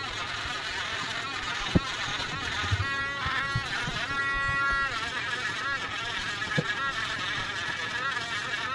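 Cordless pen-style rotary engraver (Culiau Customizer) running as its bit cuts tiny windows into leather-hard clay: a small-motor whine whose pitch wavers with the cutting, holding steadier for a couple of seconds near the middle. Two short sharp knocks come near 2 s and 6.5 s.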